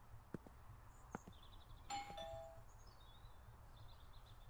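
Two-note doorbell chime, a ding-dong falling in pitch, about two seconds in, ringing briefly. A couple of soft taps come before it.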